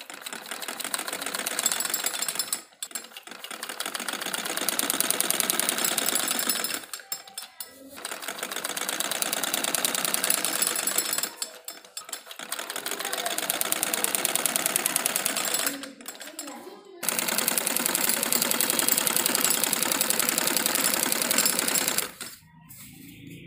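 Domestic sewing machine stitching in five runs of a few seconds each, a rapid even clatter that builds up speed at the start of each run, with brief stops between them.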